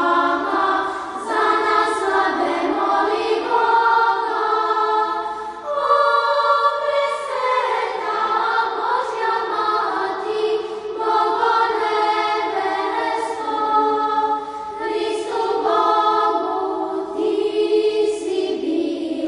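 A choir of Orthodox nuns singing liturgical chant unaccompanied, in long held phrases with short breaks between them.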